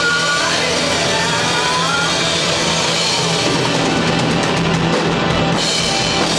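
Live rock band playing loudly: distorted electric guitars and a drum kit over a held low note.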